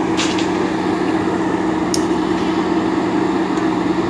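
JCB backhoe loader's diesel engine running steadily with a constant low hum, with a couple of brief sharp clicks, one near the start and one about two seconds in.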